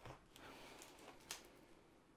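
Near silence: faint rustle of a plastic-film-covered diamond painting canvas being handled, with a few soft clicks and one brief sharper tick a little past halfway.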